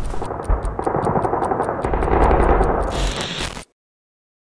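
Dramatic film soundtrack and effects: a dense low rumbling din with a fast regular ticking over it, about six ticks a second, swelling into a louder hit near the end and cutting off abruptly into silence.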